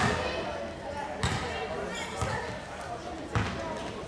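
A basketball bouncing on a sports-hall floor: four separate bounces, roughly a second apart.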